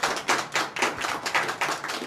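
Applause from a small studio audience: a run of many separate, irregular hand claps.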